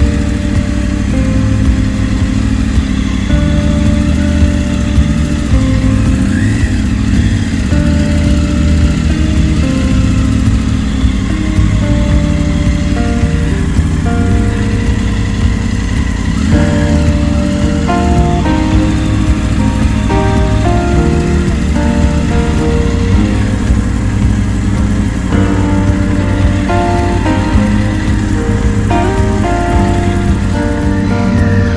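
Background music with a clear melody, over a Triumph motorcycle engine running at low speed, its revs rising and falling now and then.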